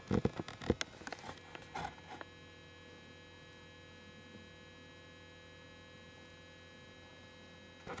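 Steady electrical mains hum with many buzzy overtones, picked up by the computer's recording setup. A few sharp knocks and rustles fall in the first two seconds, then only the hum remains.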